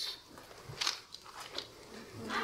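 Faint rustling and shuffling with a few light knocks and clicks, the sound of a congregation getting up from the pews.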